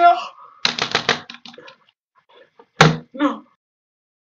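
A computer keyboard or desk being struck rapidly, about eight strokes a second, under a frustrated voice. About three seconds in comes a single heavy thump.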